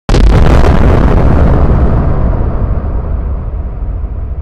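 Logo-intro sound effect: a sudden loud blast with crackling, like an explosion, starting a moment in and slowly fading away over about four seconds.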